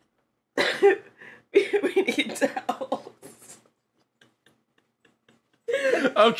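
A person coughing in two fits: a short one about half a second in, then a longer broken run that dies away after about three and a half seconds, followed by a few faint clicks.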